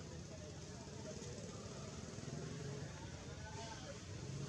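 Outdoor background: a steady low rumble with faint, indistinct distant voices.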